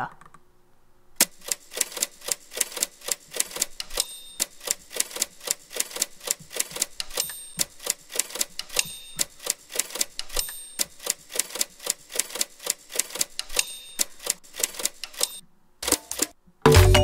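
Typewriter-like clicking from a previewed audio track: a steady run of sharp keystroke clicks, about four a second, with a short high tone now and then. It starts about a second in and stops shortly before the end.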